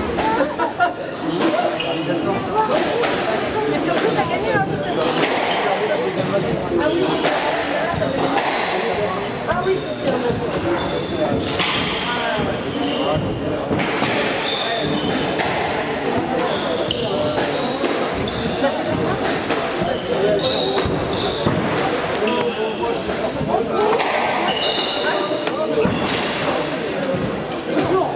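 Squash rally: the ball cracks repeatedly off rackets and the court walls, each hit echoing in the enclosed court, with short shoe squeaks on the wooden floor, over a steady background of voices.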